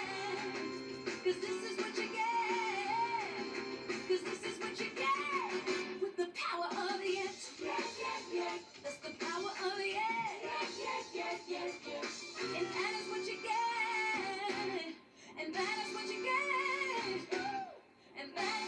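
An upbeat pop song with lead and group singing, played from a television in a small room. The music dips briefly twice, about three-quarters of the way through and again just at the end.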